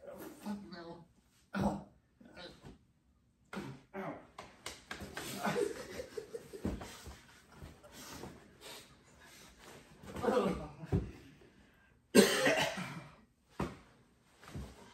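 Men's voices, mostly coughing, grunting and breathing hard, with some indistinct talk, over occasional short knocks of bodies moving on a carpeted floor. A loud burst comes about twelve seconds in.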